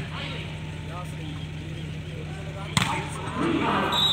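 A volleyball struck hard once, a sharp slap a little under three seconds in, followed by a swell of spectators shouting and cheering as the rally ends. Scattered voices and a steady low hum run underneath.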